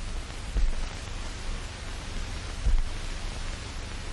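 Steady hiss of an old film soundtrack, with a low rumble and a couple of faint low thumps, about half a second and two and a half seconds in.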